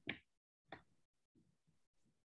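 Near silence: room tone, with a brief faint click under a second in.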